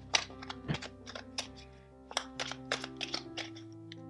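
Tarot cards being handled and shuffled by hand, a run of irregular soft clicks and card snaps, over quiet background music with long held notes.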